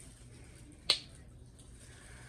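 A single sharp plastic click about a second in, from handling the cap of a squeeze bottle of ready-mixed pouring paint.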